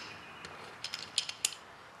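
A few faint, sharp metallic clicks and taps, irregularly spaced, from valve cover bolts and a small hand tool being handled as the cover is refitted on a GY6 50cc scooter engine.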